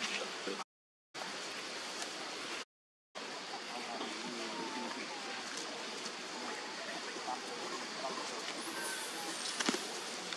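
Steady hiss of outdoor background noise with faint, distant voices in it. The sound drops out completely twice, for about half a second each, early in the stretch.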